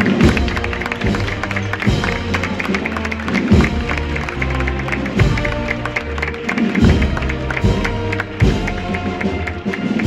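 Procession band of brass and drums playing a slow march: sustained brass chords over a rolling snare drum, with a bass drum beat about every second and a half.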